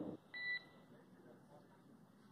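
A single short beep on the mission radio loop just after a transmission ends, about a quarter second long, followed by faint radio hiss.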